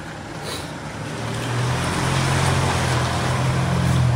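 A motor vehicle's engine hum with road noise, growing steadily louder over a few seconds and dropping away sharply just after.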